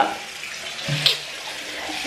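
Water running steadily, a continuous rush, with a brief low hum of a voice about a second in.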